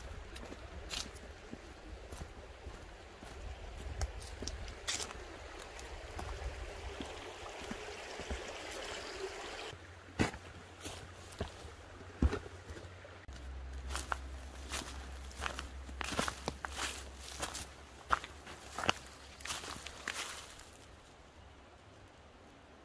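Footsteps of a hiker in boots walking through dry leaf litter, a run of short irregular crackling steps, busiest in the second half. A creek runs steadily under the steps in the first half.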